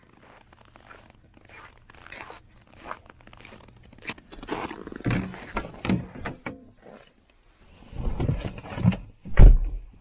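Footsteps of leather work boots (Red Wing Iron Rangers) crunching and scraping through snow, then a car door opened and someone climbing into the seat. A single heavy thump of the car door shutting comes near the end.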